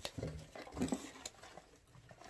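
Quiet handling of a cardboard snack box: a few light taps and rustles, with a short murmured voice sound near the start.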